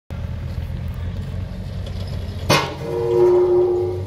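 Volvo ECR48C mini excavator's diesel engine running steadily. About halfway through there is a sharp clank, followed by a steady whine from the hydraulics as the boom and arm move.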